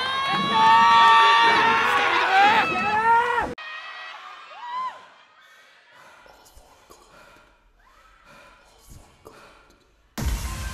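Audience cheering and screaming, many voices at once, cut off suddenly about three and a half seconds in. Then a hushed hall with faint scattered shouts and one short call from a single voice near the five-second mark.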